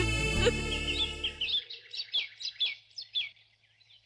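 Background score fading out in the first second and a half, then a run of short, high bird chirps, about three a second, that stop shortly before the end.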